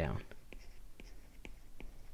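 A stylus writing on a tablet screen, heard as a few faint, small ticks and light scratching as the strokes are made.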